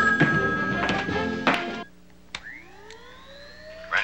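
Dramatic TV-score music that cuts off about two seconds in, followed by a click and a slowly rising electronic whine: the phone voice scrambler being switched on.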